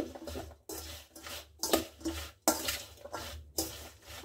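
A spoon stirring oil-coated chopped carrot, radish and green chilli in a stainless steel bowl: several separate scraping strokes against the bowl as the pickle is mixed.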